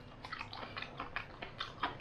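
Faint eating sounds: chewing of soft steamed celery bolaizi and quick, irregular small clicks of chopsticks against porcelain bowls.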